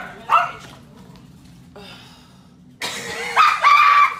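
A dog barking: a couple of short barks at the start, then a louder, drawn-out high cry near the end.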